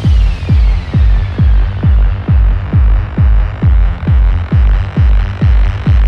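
Electronic techno/trance track with a steady four-on-the-floor kick drum, about two beats a second, each kick dropping in pitch, over a low droning bass. The treble is mostly dark, and a falling sweep fades out in the first two seconds.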